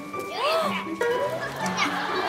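Voices over soft background music, with one drawn-out exclamation rising and falling about half a second in.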